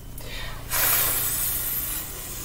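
A woman's long, sustained 'fff' hiss: the F sound made by blowing through the top teeth on the bottom lip, starting just under a second in and slowly fading, the first half of the blend 'f-a'.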